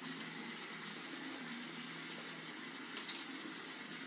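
Steady, faint hiss of background room noise, with one small click about three seconds in.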